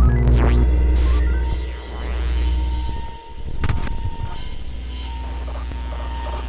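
Electronic trailer sound design: a deep bass drone under swooping falling and rising electronic sweeps, with a short burst of static hiss about a second in and a few glitchy clicks later.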